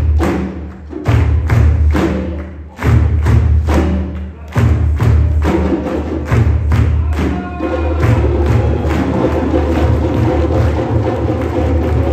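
Ensemble of djembes and other hand drums playing a steady rhythm of deep bass strokes. The beat dips briefly three times in the first half, then runs on more densely.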